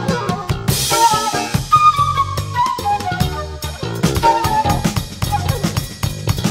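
Suri-jazz band music from a 1983 vinyl LP: a busy drum kit with bass drum and snare, under a bass line and a melodic run that falls in pitch over a couple of seconds.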